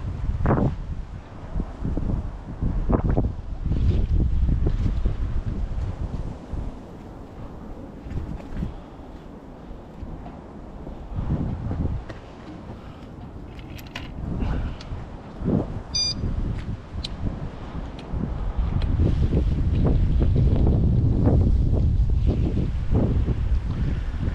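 Strong wind buffeting the microphone in gusts, a low rumble that swells and dies away and is heaviest near the end. A brief high-pitched chirp sounds about two-thirds of the way through.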